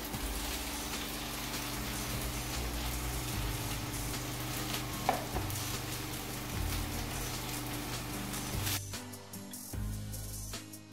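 Washed gomen (collard greens) sizzling in a hot, dry steel pan on a gas stove, cooked without water or oil, under background music. There is a single knock about five seconds in, and the sizzle cuts off suddenly near the end.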